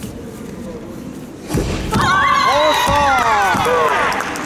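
Two dull thuds of feet on the competition mat as the karate fighters close in, then loud, high-pitched, drawn-out shouts, breaking off again and again, for nearly two seconds.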